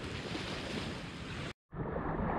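Steady beach ambience of wind and small waves washing on the shore, with wind on the microphone. It cuts off suddenly about one and a half seconds in, and after a brief silence a different shoreline ambience follows.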